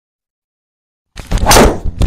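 Golf driver swung and striking a ball off a tee, with one sharp hit about a second and a half in after a silent start. The golfer calls the shot horrible, a mishit.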